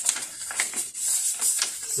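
Paper and card rustling and crinkling as hands shift and fold junk-journal pages, with a few small clicks and taps.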